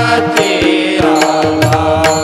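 Marathi devotional bhajan singing accompanied by tabla, over a steady sustained drone tone. Small hand cymbals (taal) and the tabla strokes keep the rhythm.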